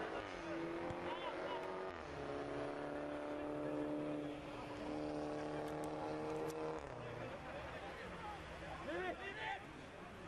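A motor vehicle's engine running at a steady pitch, rising slightly, then dropping about two seconds in as in a gear change, and holding steady until it fades about seven seconds in. Voices shout across the pitch near the end.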